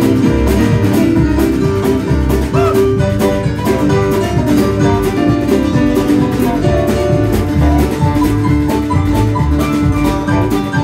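Live band playing an instrumental break in a bluegrass style: banjo, mandolin and guitars over keyboard, electric bass and a steady drum beat, with no singing.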